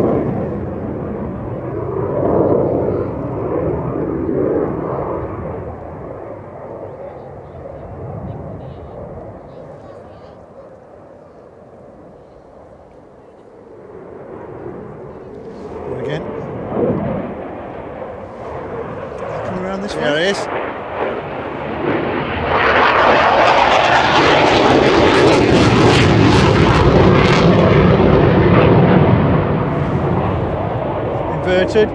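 Eurofighter Typhoon's twin jet engines heard through aerobatic manoeuvres: loud at first, fading to a distant rumble about halfway through, then swelling again to a steady, very loud jet roar over the last eight seconds as it comes close.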